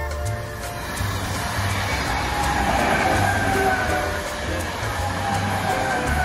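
An ÖBB electric multiple unit passes close by. The rush of wheels on rail builds to its loudest about halfway through, and a whine falls slowly in pitch as the train goes by. Background music with a steady bass line plays underneath.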